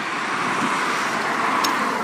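Cars passing on a city road: a steady rush of tyre and engine noise that swells toward the end as a car goes by.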